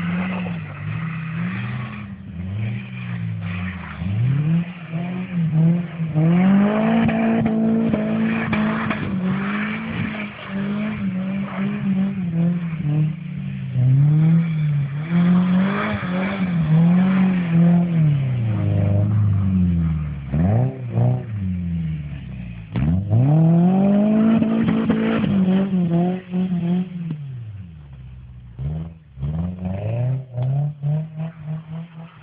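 Car engine revved hard, its pitch rising and falling again and again, with a sharp click about three-quarters of the way through and a brief lull near the end.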